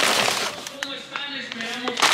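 Rustling and crinkling of a shopping bag and a paper bread bag as groceries are pulled out, loudest in the first half second, then a few lighter crinkles and clicks.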